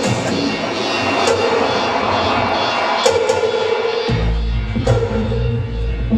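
Electronic dance music from a DJ set, played loud over a club sound system, with a short synth figure repeating about every two seconds; about four seconds in a heavy bass line comes in.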